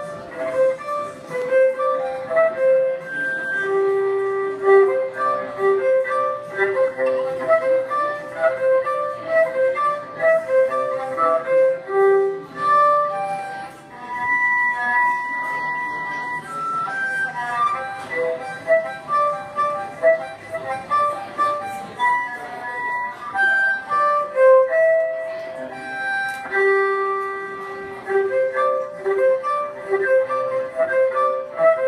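Solo violin played mostly in natural harmonics, giving clear, ringing notes in quick runs, with a few longer held notes about halfway through.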